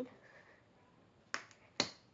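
Two sharp clicks about half a second apart in the second half, the second louder.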